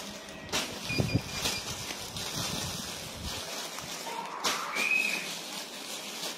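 Clear plastic garment bags rustling and crinkling as clothes are handled, with a few sharp rustles in the first second and a half and again just after four seconds. A brief high whistle-like chirp sounds about five seconds in.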